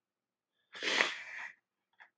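A single short, breathy burst of breath from a person, loudest about a second in and fading within half a second.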